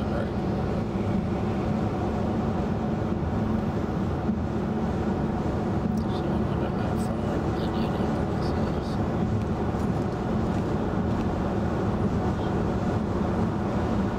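Steady road and tyre noise inside the cabin of a 2011 VW Tiguan SEL 4Motion on 18-inch wheels, cruising at highway speed.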